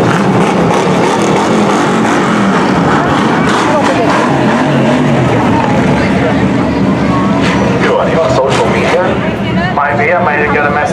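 Engines of a pack of dirt-track hobby stock race cars running together at slow pace, their pitches wavering up and down as drivers blip the throttle.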